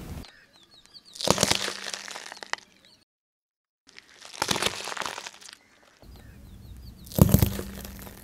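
A car tyre rolling over and crushing raw potatoes: three separate bursts of cracking and crunching as the potatoes split and flatten under the tread.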